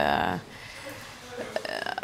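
A woman's short, low, creaky-voiced hesitation sound in mid-sentence while searching for words, followed by a quiet pause of about a second and a half.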